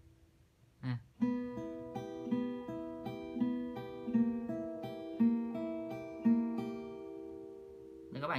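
Acoustic guitar fingerpicked in a steady arpeggio, about three notes a second, starting about a second in. Each note rings on under the next. The index finger is barred across three strings in advance so that no note is cut short at the chord change.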